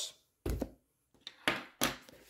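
Paperback books being handled on a table: a dull thump about half a second in, then two sharper taps near the end.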